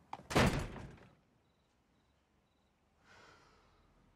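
A door slamming shut about half a second in, the loudest sound here. About three seconds in comes a soft breath or sigh.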